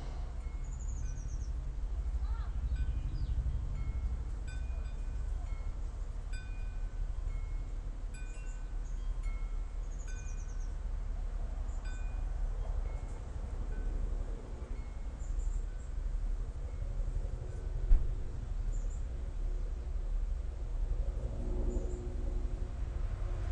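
Wind chimes tinkling, short notes at two pitches coming every second or so through the first half, with a couple of short high bird trills, over a steady low rumble. One sharp knock about eighteen seconds in.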